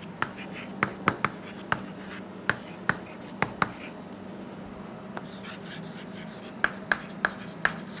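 Chalk tapping and scratching on a chalkboard as words are written: a run of sharp clicks, a lull a little after halfway, then a few more clicks, over a low steady hum.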